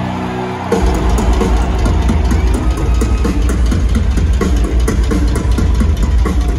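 Live rock drum kit solo heard through the arena PA. A held note gives way, about a second in, to a loud, fast, unbroken double bass drum roll with cymbal crashes.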